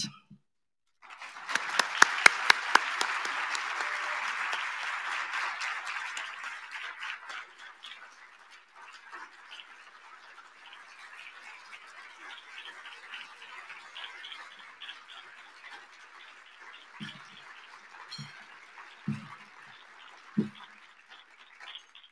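Audience applause that starts about a second in with sharp close claps, is loudest for the first few seconds, then dies down to softer clapping. A few low thumps near the end.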